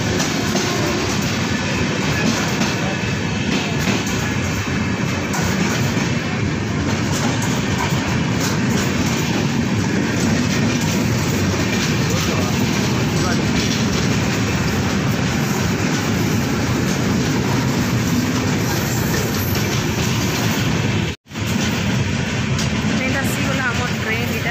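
A passenger train's coaches rolling past a platform at close range: a loud, steady rumble and rattle of wheels on the rails. It breaks off for an instant near the end, then carries on.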